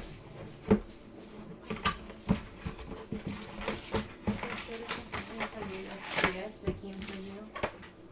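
Cardboard card box and trading cards being handled: a string of sharp clicks, taps and rustles of card stock and packaging.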